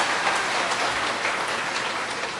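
Audience applauding, the clapping gradually dying down.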